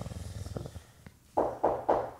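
A man acting out snoring, a low rattling breath as if dozing off in sitting meditation. It stops about a second in, and three short, louder bursts follow.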